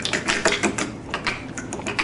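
Plastic sport-stacking cups (Speed Stacks) clattering in a fast run of light clacks as they are stacked up and slid back down, mid-way through a timed cycle stack on a stacking mat.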